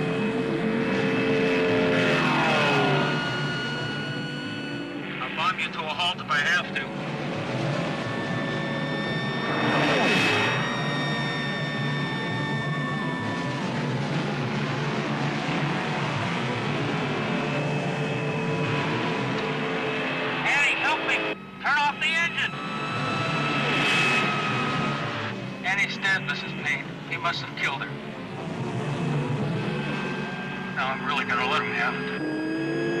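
Film soundtrack of car engines racing, rising and falling in pitch as they rev and pass, over a music score with long held notes.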